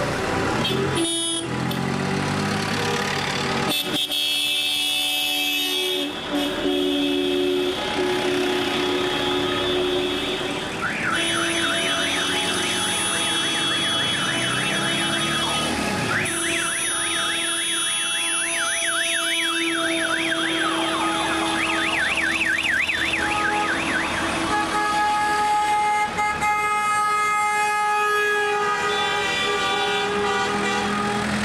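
Car horns of a wedding convoy honking together in long, overlapping blasts at several pitches. From about a third of the way in, an electronic siren-style horn warbles rapidly up and down for about twelve seconds, with a short break partway through.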